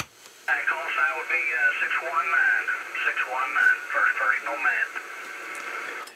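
A man's voice received over a Cobra 2000 GTL Supersnake CB radio in lower sideband, thin and narrow-sounding under steady static hiss. It begins about half a second in after a brief click, replying with his call and name.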